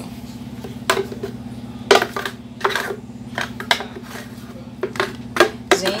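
Irregular knocks and clinks of dishes and utensils being handled on a kitchen counter, about a dozen over a few seconds, over a steady low hum.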